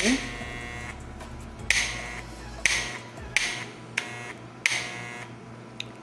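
Electric hair clipper with a magnetic coil motor buzzing in six short bursts, each starting abruptly and cutting out again as the clipper and its cord are moved. This is an intermittent connection, apparently a wire that stops carrying voltage to the coil when it is flexed.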